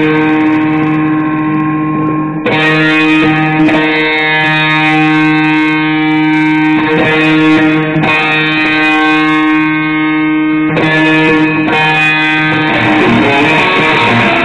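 Amplified electric guitar playing long, ringing chords, each held for one to three seconds before the next is struck, turning busier with quicker notes near the end.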